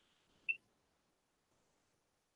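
A single short computer click about half a second in, as the highlighted entry in a drop-down menu moves down by one. Otherwise near silence.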